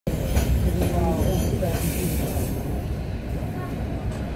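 Passenger train running along the track, a steady low rumble heard from inside the carriage.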